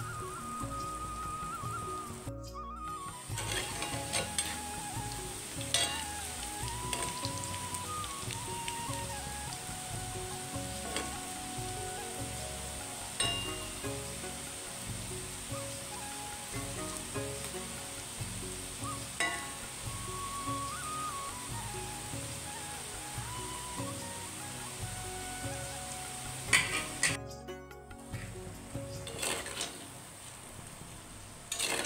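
Palm-fruit fritters (taler bora) deep-frying in hot oil in an iron kadai, sizzling steadily. A slotted metal spoon stirs them, with a few sharp clinks against the pan.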